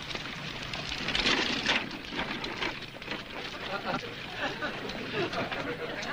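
Soft, indistinct voices over the constant crackling hiss of an old television soundtrack.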